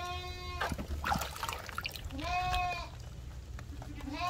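A goat bleating twice, each call about half a second to a second long with a short rise in pitch at its start, and a third call beginning near the end. Light splashing and handling of water balloons can be heard between the calls.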